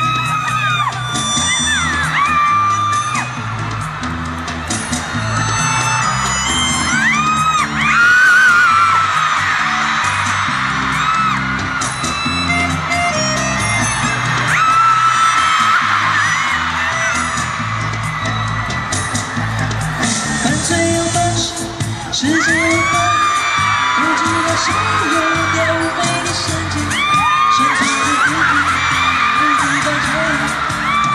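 Live pop concert music played loudly over a hall's sound system, with fans in the audience screaming and whooping over it.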